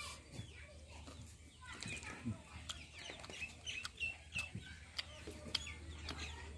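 Faint, irregular clucking of chickens: a scattered series of short calls.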